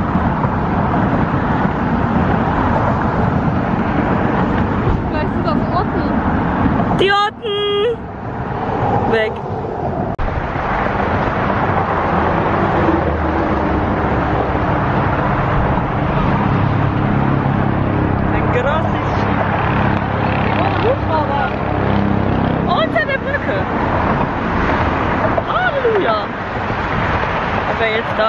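Strong wind on the microphone mixed with steady road traffic going by close alongside. A low, steady engine drone joins in from about twelve seconds in and fades a couple of seconds before the end.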